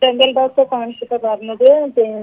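A caller speaking over a telephone line: continuous speech with a thin, narrow-band telephone sound.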